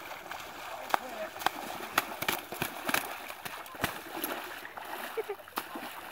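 Repeated sharp splashing and sloshing of water as a Canada goose caught in a beaver trap struggles while being freed by hand.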